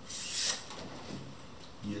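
A brief rustle of paper, about half a second long at the start, as a book of sheet music is handled and lifted off a keyboard.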